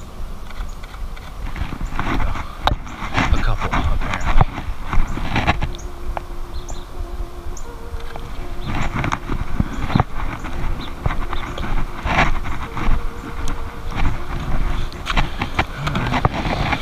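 Irregular knocks and rustles over a low rumble, with faint steady tones appearing partway through.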